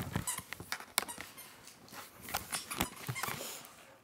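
Handling noise from a laptop being gripped and moved: an irregular run of clicks and knocks, with a sharper knock about a second in and another cluster a little before the end.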